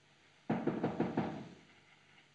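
Rapid knocking on a door: about six quick raps starting half a second in, then dying away.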